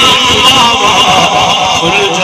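A man's voice chanting in a wavering melodic line, loud and distorted through a public-address system.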